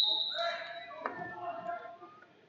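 A referee's whistle blast, a steady high tone that fades out about a second in, over gym voices. A single sharp knock comes about a second in.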